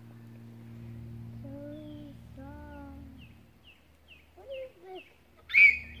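Birds calling: a run of short high chirps about twice a second, with two longer, lower arched calls about one and a half seconds in, over a steady low hum that fades out partway. Near the end comes a short, loud, high vocal burst, the start of laughter.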